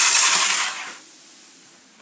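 Slot car on a 16D chassis running round a plastic Polistil track, a steady rough buzz from its small electric motor and wheels. The buzz dies away about a second in as the car slows and stops.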